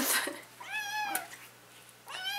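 A two-month-old kitten meowing once, a single high meow about half a second in that holds and then dips slightly in pitch, lasting about half a second. A brief loud sound comes right at the start, before the meow.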